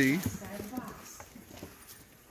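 Faint light taps and rustles of vinyl LP jackets being handled and leafed through, after a spoken word ends at the start.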